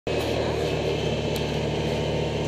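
A vehicle engine running at a steady pitch while driving, heard from on board as an even low hum.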